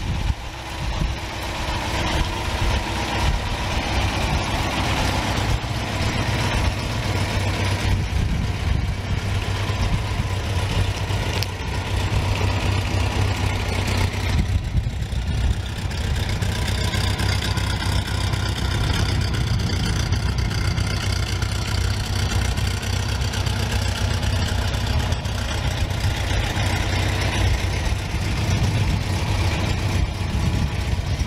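A 1964 MGB's 1.8-litre four-cylinder engine idling steadily.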